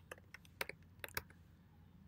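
Computer keyboard typing: a quick run of about seven keystrokes in the first second or so, then a pause, over a faint steady low hum.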